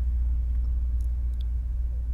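A steady deep hum, constant background noise on the audio, with a couple of faint clicks about halfway through.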